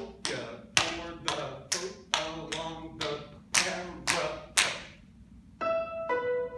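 Shoes tapping and stepping on a wooden stage floor in a dance rhythm, about two to three sharp taps a second, each ringing briefly in the hall. Near the end the taps stop and music with steady pitched notes begins.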